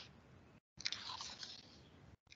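Faint crackly, rustling noises close to a video-call microphone, with a short louder cluster about a second in. The audio cuts out completely for a moment about half a second in, as a call's noise gate does.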